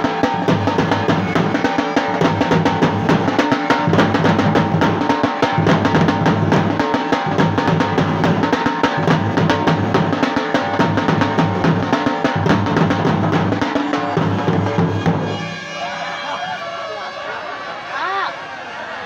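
A loud drum group playing in the street: fast, dense drumming over deep bass beats that repeat steadily. The drumming stops about fifteen seconds in, leaving crowd voices.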